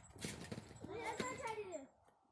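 A toddler babbling in a high voice, with a few short knocks near the start.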